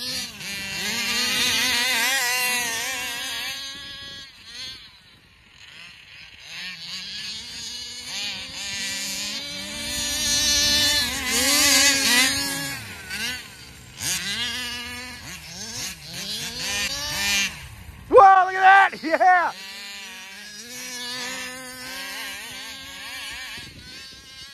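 Small two-stroke engine of a large-scale gas RC car revving up and down again and again as it is driven hard, pitch climbing and falling with the throttle. It drops back briefly twice, and its loudest burst comes about three quarters of the way through, as it passes close.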